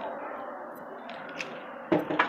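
Wet string mop wiping over glazed ceramic floor tiles, a soft steady swish.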